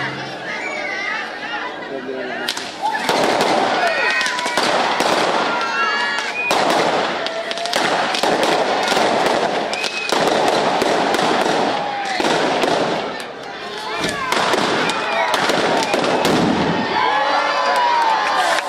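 A long string of firecrackers going off in rapid, crackling volleys from about two and a half seconds in, with children shouting and screaming over it.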